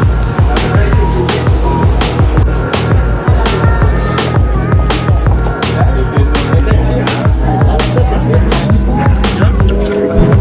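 Background music with a steady beat: drum hits over a pulsing bass line and melodic notes.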